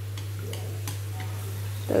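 A steady low hum with a few faint ticks over it.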